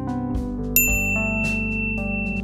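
A single bright bell-like ding sound effect, struck about three-quarters of a second in and ringing on as one steady high tone for over a second, over background music with a steady beat.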